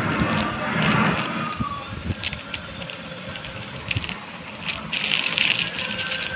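Plastic diaper-pack wrapping crinkling and rustling as it is handled, with many small crackles. It is louder about a second in and again near the end.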